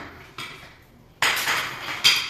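Small hard plastic pieces of a jump-rope handle clamp clicking and scraping as they are worked by hand: a click at the start, then a louder stretch of scraping and rattling in the second half.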